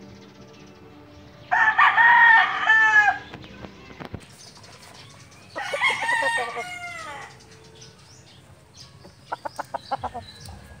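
Rooster crowing twice, each crow lasting nearly two seconds, followed near the end by a quick run of short clucks.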